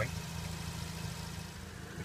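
Steady low machine hum with a faint background hiss.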